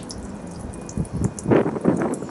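Water trickling and dripping off a freshly rinsed car's paintwork as it sheets off the bonnet, with a brief louder noise in the second half.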